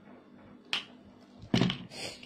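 A single sharp click about three-quarters of a second in, followed by a short, muffled low burst near the end, in a small, quiet room.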